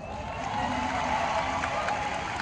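Audience clapping, swelling in at the start, with faint voices underneath.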